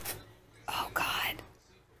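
A woman whispering briefly under her breath for under a second.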